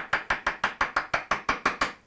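Wooden mallet tapping a chisel in quick, even light strokes, about six a second, chopping out the waste between dovetail pins.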